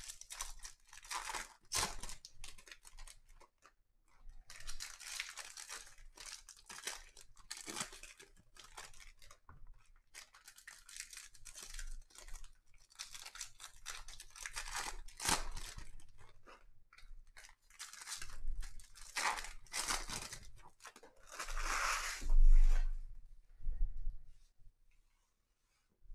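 Foil wrappers of 2021 Topps baseball card jumbo packs being torn open and crinkled, with cards rustling between the hands in irregular bursts. A louder thump near the end as the stack of cards is knocked square on the table.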